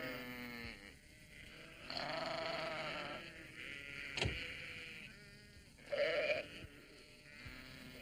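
A flock of sheep bleating, several quavering bleats one after another, the longest about two seconds in, with a single sharp click about four seconds in.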